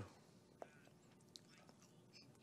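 Near silence: a pause in speech, with a couple of faint brief clicks.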